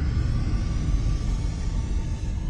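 Low, steady rumbling drone of an ominous ambient soundtrack, with a faint hiss and thin held tones above it.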